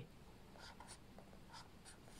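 Faint scratching of a felt-tip pen drawing short strokes on graph paper.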